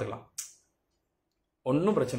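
A man's speaking voice, breaking off just after the start, a short sharp click-like hiss about half a second in, then about a second of dead silence before he speaks again.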